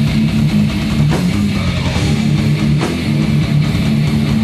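Thrash metal band playing live and loud: a distorted electric guitar riff with a fast, chugging low rhythm, and a few sharp hits cutting through.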